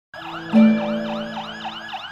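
Fire truck siren in a fast yelp, warbling up and down about four times a second. About half a second in, a steady horn note starts, loudest at first and then fading.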